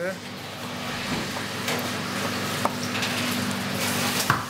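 A chef's knife slicing the skin at a plucked partridge's neck on a chopping board, with a few light clicks. Under it runs a steady kitchen hum and a hiss that grows slightly louder.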